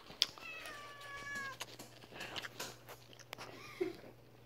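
A stray cat meowing once outside a window screen: a single faint drawn-out call that falls slightly in pitch, followed by a few light clicks.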